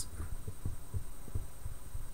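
Low, irregular thumping rumble of handling noise from a handheld camera being moved, several soft knocks a second, over a faint steady high whine.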